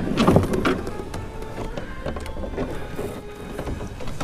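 Heavy wooden dresser being laid down in a pickup truck bed: a cluster of knocks and scrapes in the first second, then quieter shifting and handling noise.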